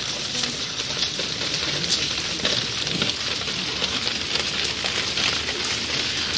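Water overflowing from a rooftop plastic water tank (tinaco) and spattering down a brick wall: a steady hiss of many small splashes. The tank is overfilling and spilling to waste.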